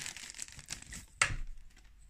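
Plastic packaging crinkling and rustling as it is handled, with small clicks and a louder rustle just over a second in.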